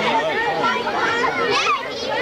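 A crowd of schoolchildren talking and calling out all at once: a steady, loud babble of many young voices.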